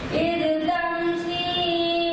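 A boy's voice chanting into a microphone in a slow melodic recitation. He draws a quick breath at the start, then holds long, steady notes.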